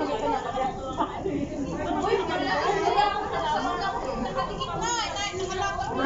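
Group chatter: several people talking over one another at once.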